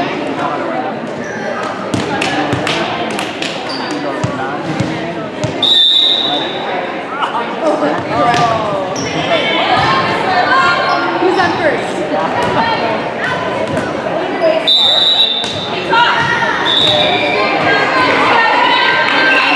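Volleyball match in an echoing gym: the ball being struck and bouncing in sharp thuds amid players' calls and spectators' chatter. A referee's whistle blows briefly about six seconds in and twice more near the end, marking the start and end of a rally.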